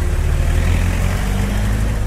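A motor vehicle's engine running, a steady low rumble.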